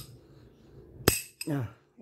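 A single sharp metallic click with a brief ring about a second in: a chrome socket snapping onto the square drive of a 1/2-inch sliding T-bar.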